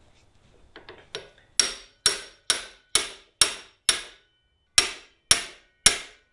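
Hammer striking a manual impact screwdriver to break loose the Phillips screws on a centrifugal clutch: a few light taps, then about nine sharp, ringing metal-on-metal blows, roughly two a second, with a short pause just after the sixth.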